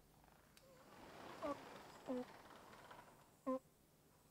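Near silence broken by three faint, short hums, about a second apart, from a man's voice: brief hesitation sounds rather than words.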